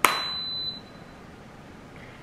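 A sharp click, then a short, high electronic beep from an Instant Pot electric pressure cooker lasting under a second: the signal that the cooking program it was just set to has started.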